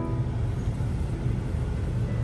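Steady low rumble of a Honda car heard from inside the cabin: engine and car noise with no other distinct event.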